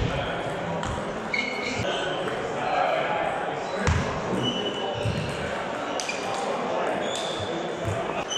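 Table tennis rally: a celluloid ball clicking off bats and the table at irregular intervals, with short trainer squeaks on the wooden hall floor. Echoing background chatter from the hall runs underneath.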